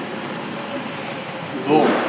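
Steady, even machine noise, a continuous rush with no distinct beat or pitch, until a man's voice comes in near the end.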